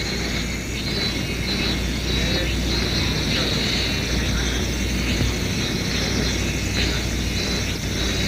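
Steady outdoor background noise: a constant low rumble under an even hiss, with faint voices.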